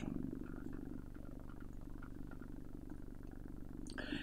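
Pause between sentences: a low steady hum under faint room noise.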